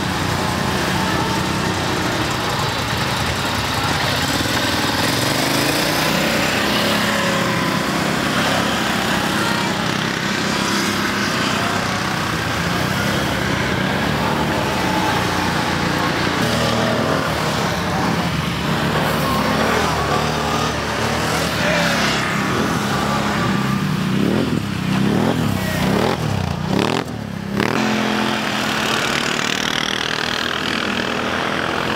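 Several quad ATV engines running, with revving that rises and falls in pitch near the end.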